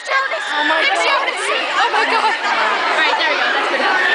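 Several people chattering and talking over one another close to the microphone, many voices overlapping at once.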